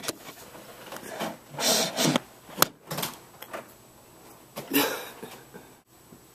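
Camera handling noise: a few brushing, rustling sounds and several sharp clicks and knocks as the camera is set down and steadied.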